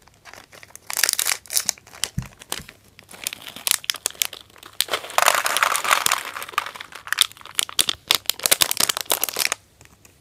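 A thin plastic candy packet crinkling as it is handled and emptied, with small hard candy balls tumbling into a plastic tray compartment. The crackling is dense and uneven and stops shortly before the end.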